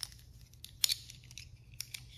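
Plastic game chips clicking against each other as they are picked up off the board by hand: a few sharp clicks, the loudest just under a second in.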